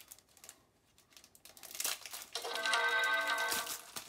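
An Android system sound played through the Onn Surf Gen 3 tablet's small speaker: a steady chord of several tones held for about a second, starting about two and a half seconds in. A few faint clicks come just before it.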